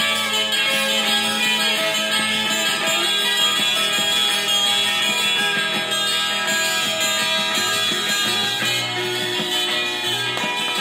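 Instrumental passage of an acid folk song playing from a 45 rpm vinyl single on a turntable.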